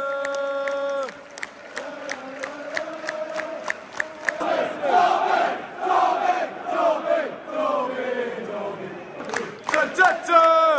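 Football crowd singing a chant: a held note ends about a second in, then rhythmic hand claps about three a second, with the crowd singing again over the claps from about four seconds in.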